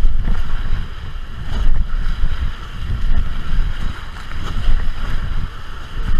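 Whitewater rapids rushing and splashing around an inflatable raft, heard close up on the boat's camera, with wind buffeting the microphone in a heavy, surging low rumble.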